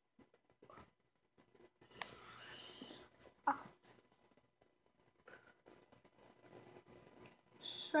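Faint speech: a child quietly sounding out a word, with a drawn-out hiss about two seconds in and a short voiced sound just after.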